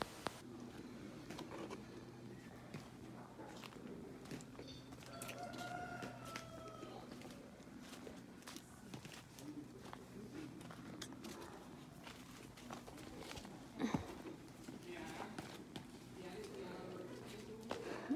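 Faint, indistinct voices of people working outdoors, over a low steady hum, with scattered small clicks and knocks. A drawn-out call comes about five seconds in, and a louder knock about fourteen seconds in.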